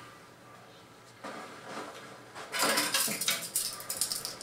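Wire coat hangers rattling and clinking against each other and a closet rail as they are pulled off. It starts softly about a second in and turns into a busy metallic clatter from about halfway.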